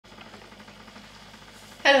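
Faint steady hum of a running aquarium filter, cut into just before the end by a man's voice saying "Hello".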